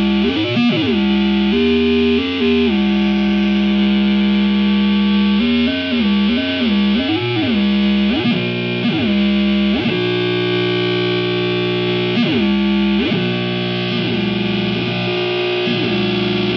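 Distorted electric guitar feedback from a Squier Bullet Stratocaster leaning against its amp: sustained droning notes that are repeatedly bent in quick swooping up-and-down pitch glides through effects pedals.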